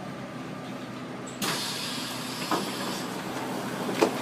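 Subway car noise: a steady train hum that steps up louder about a second and a half in, with a knock partway through and another at the end.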